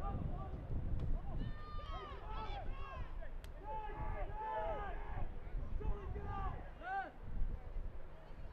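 Several voices shouting short calls across a rugby sevens pitch during open play, overlapping from about a second and a half in, over a steady low rumble.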